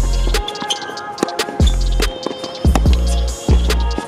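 Background music with a heavy beat and deep sustained bass notes.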